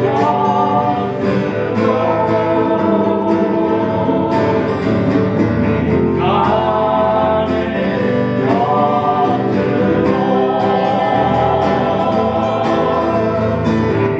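A song played live on two acoustic guitars, with a woman and a man singing together.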